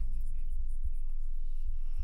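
Low, steady rumbling drone from a thriller's score and sound design, with faint scattered scratchy crackles over it.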